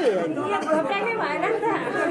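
Several people chattering and talking over one another, with no single clear speaker.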